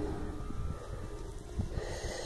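Low rumbling handling noise at the microphone as the camera and toy figures are moved, with a short breath near the end.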